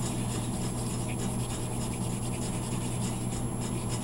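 Toothpick stirring tinted epoxy resin on paper: soft, continuous scratchy rubbing, with a steady low hum underneath.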